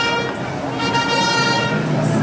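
Processional brass band playing a slow funeral march in long held chords.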